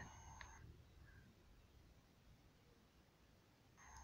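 Near silence: a pause in the narration with faint low room tone.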